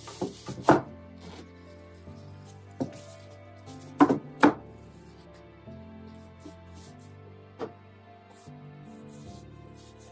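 Sharp knocks of wooden furniture panels being handled and set down on a workbench. There are a couple near the start, a louder pair about four seconds in, and a lighter knock later. Background music plays underneath.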